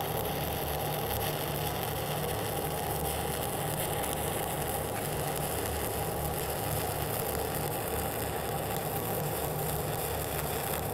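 Shielded metal arc (stick) welding on 2-inch schedule 80 carbon steel pipe: the electrode's arc crackles and hisses steadily without a break.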